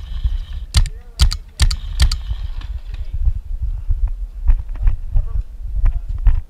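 Paintball gunfire: irregular sharp pops of markers firing and balls breaking, several close together in the first two seconds and more spaced out later, over a low rumble on the camera microphone.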